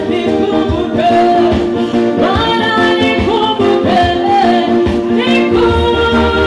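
Gospel worship song sung by voices into microphones over steady instrumental accompaniment. A low bass part comes in near the end.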